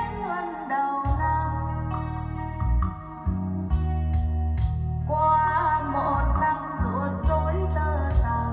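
A Vietnamese ballad with a woman singing over guitar and a stepping bass line, played back through a vintage Fisher 450T solid-state receiver driving AR-2a loudspeakers.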